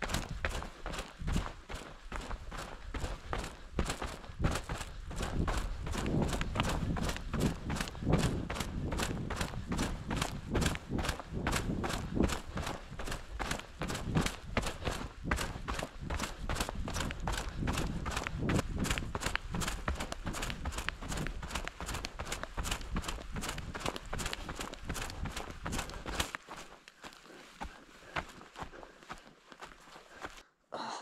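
Hiker's footsteps on a dirt and rock forest trail, a quick, even walking rhythm. Wind rumbles on the microphone under the steps and drops away near the end.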